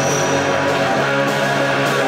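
A garage rock band playing live: loud distorted electric guitar strummed over drums, with cymbal hits recurring through the music.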